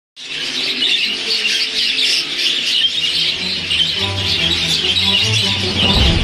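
A flock of budgerigars chattering and warbling without a break, mixed with background music whose bass line comes in about halfway through.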